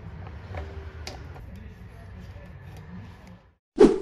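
Light clicks and taps of metal engine parts being handled on a workbench over a low workshop hum. Near the end there is one short, loud burst.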